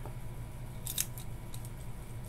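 A few small, sharp clicks about a second in, with fainter ones just after: a fountain pen's metal section and plastic nib housing being handled and fitted together. A steady low hum runs underneath.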